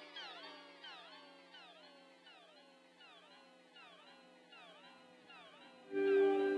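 Electric guitar through an EarthQuaker Devices Avalanche Run delay and reverb pedal: the faint, fading tail of delay repeats, each repeat sweeping down in pitch, roughly every two-thirds of a second. A new, louder chord starts right at the end.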